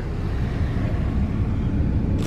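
Steady low rumble and hiss inside a car's cabin.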